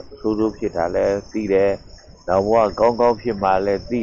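A man's voice speaking Burmese in continuous phrases, over a steady high-pitched whine in the background.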